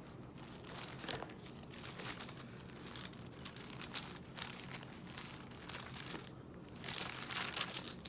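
Faint rustling and crinkling of paper pages being handled and turned, with small clicks throughout and a somewhat louder rustle near the end.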